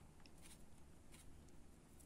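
Near silence, with a few faint soft ticks and rustles of a fine crochet hook working polyester thread.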